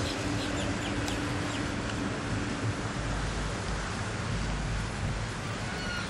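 Faint bird calls over a steady, even rushing noise, heard from inside a car.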